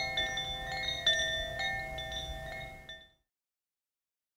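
Tuned chimes ringing, several notes struck one after another so that they overlap and sustain, until the sound cuts off suddenly about three seconds in.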